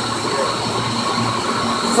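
A row of 25-horsepower electric-motor centrifugal pumps running together: a steady mechanical drone with a low hum and a high whine. The pumps are feeding the sand filters and ozone contact towers of the aquarium's life-support system.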